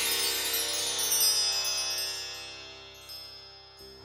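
Intro music ending on a shimmering chime: many ringing tones sound together and slowly fade away, nearly gone by the end.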